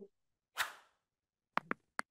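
Stock subscribe-animation sound effects: a short whoosh about half a second in, then two quick mouse clicks near the end.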